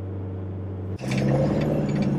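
A 4WD's engine running at a steady speed while driving on a dirt track: a low, even drone. About a second in, the sound switches abruptly to the engine heard from inside the cabin, slightly higher in pitch with more hiss over it.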